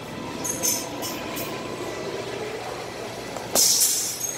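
Gloved punches landing on a heavy punching bag: a couple of lighter hits in the first second and a half, then one loud hit about three and a half seconds in, over a steady gym hum.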